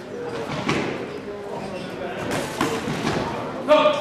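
An amateur boxing bout: several dull thuds of gloves and boxing shoes on the ring canvas, with voices shouting around the ring. The loudest is a sharp shout near the end.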